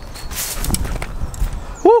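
Scuffing footsteps and a stumble, with a low rumble on the microphone, as a man nearly slips and lets out a startled "woo" near the end.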